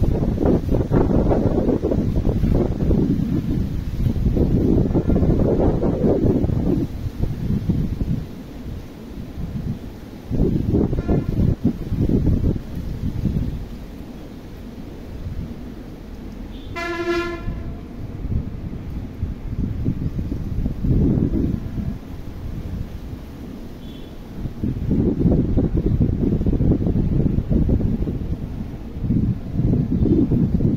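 Wind buffeting the microphone in irregular gusts, loudest at the start and near the end. About halfway through, a single short horn toot sounds.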